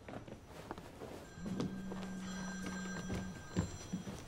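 A phone ringing with a steady buzzing tone: one ring of about two seconds starting after a second and a half, with a few soft knocks and steps around it.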